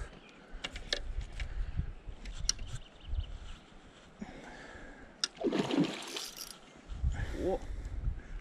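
Water splashing close to the bank as a hooked rainbow trout breaks the surface, the loudest splash about two-thirds of the way through, over a low rumble.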